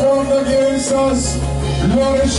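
Live church band playing slow worship music: long held chords over a bass line, with soft cymbal swells.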